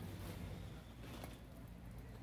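Faint background noise with a low, steady hum.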